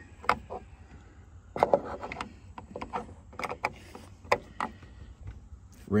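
A 2009–2014 Ford F-150 door check arm clicking and knocking against the door's sheet-metal opening as it is pushed through and worked into place. It makes a scattering of short, irregular clicks and knocks.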